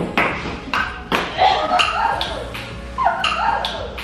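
Ping pong ball clicking off the paddles and table in a rally, a hit roughly every half second.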